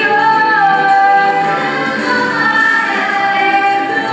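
Music with singing: a choir of voices holding long, sliding sung notes over an accompaniment.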